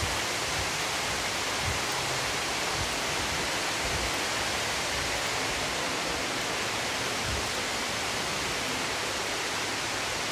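A steady, even hiss with a few faint low thumps.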